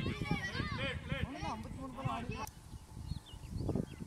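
Young players' voices calling out across the cricket field for about two and a half seconds as the ball is played, then dropping away.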